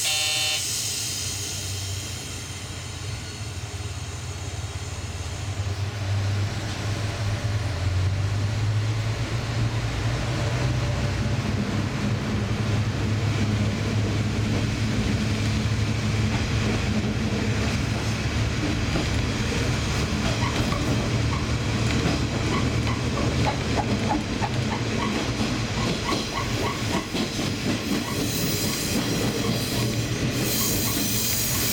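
Diesel train pulling away from a station: a brief tone sounds at the very start, then the low engine note builds as it accelerates, and rail-joint clickety-clack sets in during the second half.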